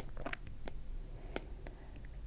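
Stylus tip writing on a tablet screen: a few faint, light ticks as it taps and strokes the glass.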